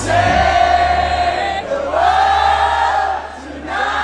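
Live house music over a club sound system: two long held sung notes over a steady bass, with many voices from the crowd singing along. The sound dips briefly near the end, then comes back.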